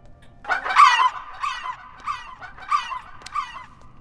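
Goose-like honking: a run of about six short honks roughly half a second apart, the loudest about a second in.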